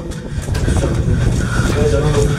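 People running on a hard cave floor: quick, irregular footfalls and knocks from the handheld camera, with a voice or hard breathing near the end.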